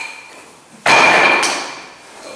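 A wooden training knife hitting the wooden floor: a faint click at the start, then a loud clatter just under a second in that rings briefly and dies away.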